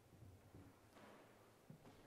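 Near silence in a hall: faint low room hum, with soft rustling and a small knock as the piano bench is adjusted and the pianist sits down at it.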